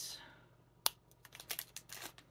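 Plastic snack wrapper rustling and crinkling as it is handled, with one sharp click a little under a second in and a run of small ticks and rustles near the end.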